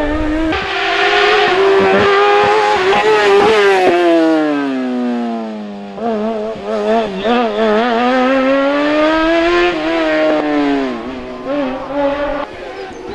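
Race car engine revving hard through a slalom chicane, its pitch rising and falling again and again as the driver accelerates, lifts and shifts between the cones. Around four seconds in the note falls steadily as the engine comes off the throttle. It breaks off suddenly about six seconds in and climbs again.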